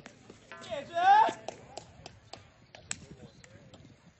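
A shot putter's loud, strained yell on the release of the throw, rising in pitch and lasting under a second, followed by a few scattered sharp claps.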